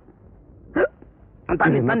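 Film dialogue: a single short vocal sound about a second in, then a man talking near the end.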